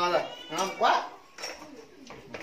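A domestic animal crying once, a rising then falling call about half a second in, after a man's voice at the start.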